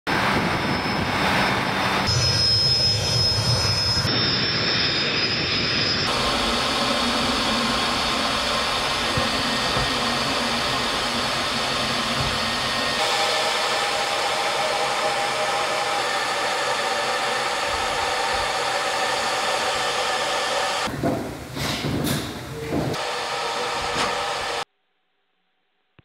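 Su-25 attack jet's turbojet engines running: steady jet noise with a high whine, changing in tone at several cuts, then cutting off suddenly shortly before the end.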